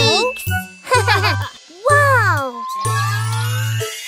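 Children's cartoon music with steady bass notes, overlaid by swooping, wordless voice-like cartoon sounds.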